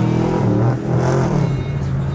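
Chevrolet Camaro engine pulling as the car drives off, heard from inside the cabin. Its pitch drops about three-quarters of a second in, then holds steady.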